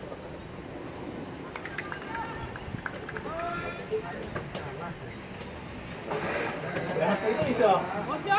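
Indistinct voices calling and shouting, sparse at first, then louder and more excited in the last two seconds. A steady high-pitched whine runs underneath.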